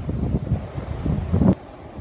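Wind buffeting a phone microphone, a low rumbling noise that cuts off with a sharp click about one and a half seconds in, followed by a much quieter stretch.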